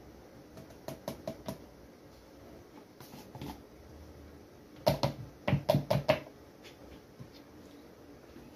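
Light taps of a metal spoon and plastic as cornstarch is knocked out of an upturned plastic tub into a plastic bowl: a few scattered taps, then a quick run of louder knocks about five seconds in.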